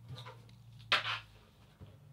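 A cardboard retail box being handled as its top flap is opened, with a short rustle of card about a second in and a few fainter scuffs before it, over a faint low hum.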